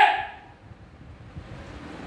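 A short voiced cry that fades out within the first half-second, followed by faint low rumbling and handling noise.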